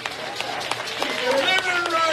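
Raised voices with drawn-out, sung-sounding calls, over scattered sharp knocks.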